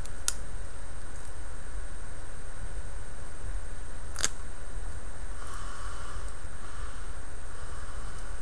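Two sharp little clicks about four seconds apart as individual model track links are handled and popped into place on a strip of tape, with a faint rustle of fingers on the tape later, over a steady low hum.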